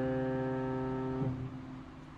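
A chord on a digital piano held and ringing, then cut off about a second and a quarter in as the keys are let go, leaving only faint background hiss.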